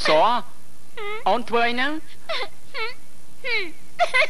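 A high voice making playful, wavering whining cries and exclamations in about six short bursts.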